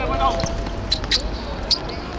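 A football being kicked on artificial turf: three sharp knocks, the first about a second in, with a player's voice calling out at the start.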